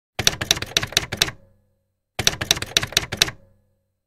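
Two quick runs of sharp clicks, five in each run at about four a second, the second run starting about two seconds after the first. Each run ends in a short fading ring. It is an edited intro sound effect.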